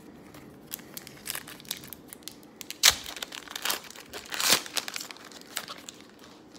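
A trading card pack's wrapper crinkling as it is handled and torn open, with two louder rips about three seconds and four and a half seconds in.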